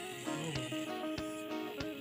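Background music: plucked-string notes over a steady beat, a little under two beats a second.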